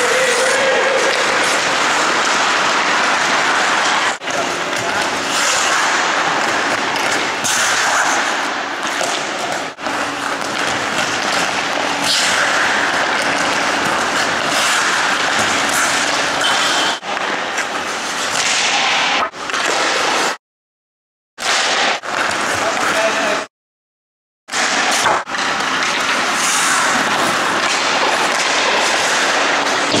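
Ice rink sounds of hockey drills: skate blades scraping and carving the ice, with sticks striking pucks, in a steady, echoing noise. The sound cuts out completely twice, for about a second each, about two-thirds of the way through.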